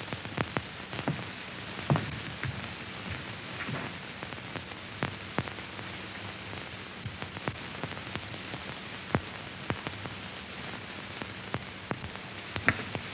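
Steady hiss with scattered irregular clicks and crackles: the surface noise of an early sound film's soundtrack, with no dialogue or effects.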